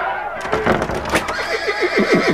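Horse whinnying, a sound effect: a rough burst of noise, then a quick run of shaky, falling calls starting about a second and a half in.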